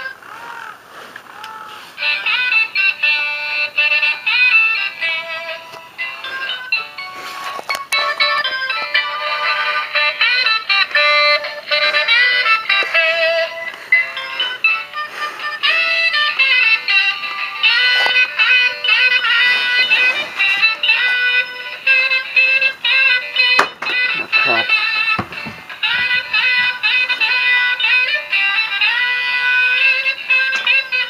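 Animated saxophone-playing Santa Claus figure playing a saxophone tune through its built-in speaker. The music is quieter for the first two seconds, then runs on steadily, with a couple of sharp clicks along the way.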